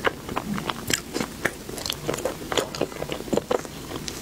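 Close-miked eating: biting into a soft round pink dessert ball and chewing it, heard as a quick, irregular run of sharp mouth clicks.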